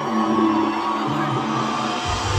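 Live pop band music played over a concert PA, heard from among the audience: sustained synth chords held steady over crowd noise as the song's intro builds.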